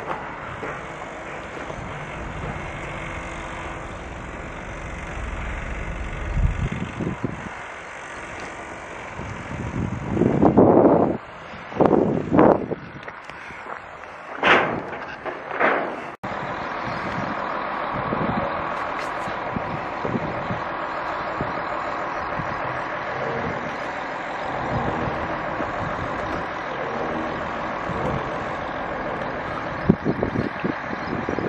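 Outdoor traffic noise: a vehicle's low rumble, then several loud, sharp bursts about a third of the way in. After a sudden cut, a steady hiss of wind on the microphone.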